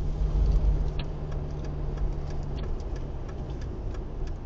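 Car engine and road noise heard inside the cabin, with a steady regular ticking of the turn-signal indicator.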